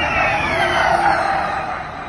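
A Formula E Gen3 electric race car passing at speed: a high electric-motor whine that falls steadily in pitch as it goes by, over tyre noise. It is loudest about a second in and then fades.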